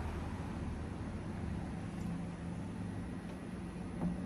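Quiet outdoor background: a steady faint noise with a low hum underneath.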